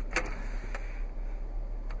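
A few light plastic clicks over a steady low hum as the overhead console's sunglasses holder is pressed and drops open.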